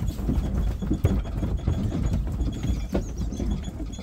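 Sheep hooves knocking and clattering irregularly on the floor of a metal livestock trailer as the ewes unload, over a steady low rumble.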